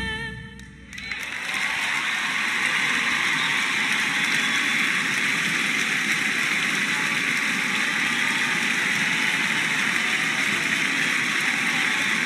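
A song's last notes die away within the first second, then an audience applauds steadily.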